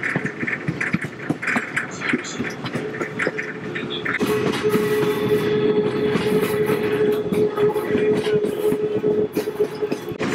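Passenger cars of a steam excursion train rolling along, with a constant clatter of wheel clicks and knocks from the track. About four seconds in, a steady high squeal joins and holds: wheel flanges grinding on the curve.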